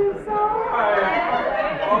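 Several voices talking over one another: overlapping classroom chatter with no single speaker clear.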